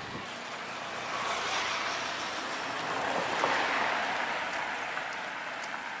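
A motor vehicle passing by on the road, its noise swelling to a peak about three and a half seconds in and then fading.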